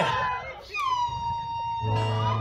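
A man's long, high held vocal call that dips slightly in pitch and then holds steady for about a second. A low, steady backing music tone comes in near the end.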